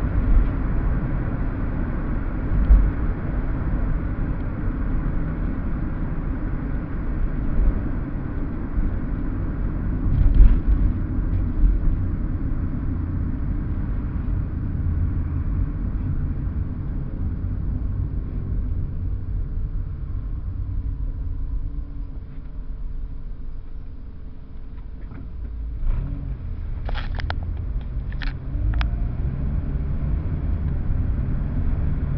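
Road noise inside a moving car: a steady low rumble of engine and tyres, easing off and quieter about two-thirds through as the car slows in traffic, then building again. A few brief clicks near the end.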